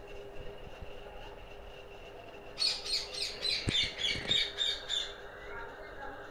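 A bird sings a quick run of repeated high chirps, about four a second, lasting a couple of seconds in the middle, over a faint steady hum.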